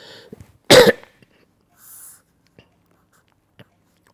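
A person coughing once, short and loud, about a second in, followed by a couple of faint ticks.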